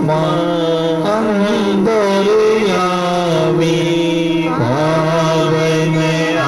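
A man singing a slow Hindi devotional chant into a handheld microphone, holding long notes that step up and down in pitch without a break.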